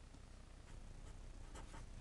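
Marker pen drawing on paper: a few faint, short scratchy strokes, the clearest cluster about a second and a half in.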